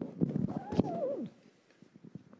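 A short, wordless voice sound off the microphone, its pitch gliding up and then down, with a sharp click about 0.8 s in. It is followed by quiet room tone.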